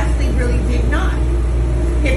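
Argumentative speech in a diner, over a steady low hum.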